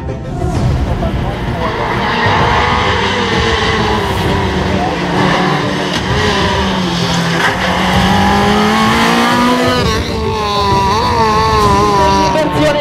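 Fiat Seicento rally car's engine revving hard under full throttle, its pitch climbing for several seconds and dropping sharply at a gear change about ten seconds in, then rising and falling again.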